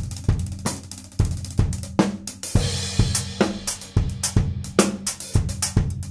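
Drum kit with Turkish cymbals played in a groove: snare, bass drum and hi-hat or ride strokes in quick succession, with a crash cymbal about two and a half seconds in.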